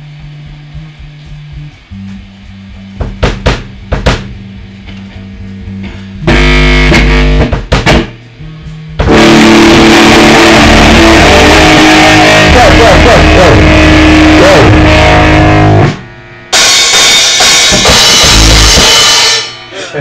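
Punk rock band playing live: electric guitar with drum kit. It starts with quiet held guitar notes and a few scattered drum hits. About six seconds in, the full kit and electric guitar come in loud, playing in stop-start bursts with short breaks and cutting off sharply near the end.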